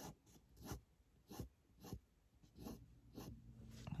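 Fine-tip pen scratching short strokes across paper as gill lines are drawn, faint, about two strokes a second.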